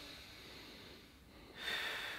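A person breathing deeply and deliberately while holding a downward-dog stretch. A louder, airy breath comes about one and a half seconds in.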